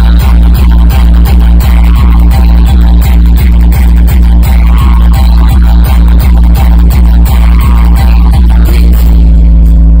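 Electronic dance music played very loudly through a DJ's stacked speaker towers: a heavy bass kick about four times a second over a deep steady bass. About eight and a half seconds in the kicks stop, leaving a held bass tone.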